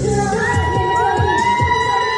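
Fans screaming, a long high-pitched cheer that rises in about a third of a second in and is held, over a pop song's steady kick-drum beat.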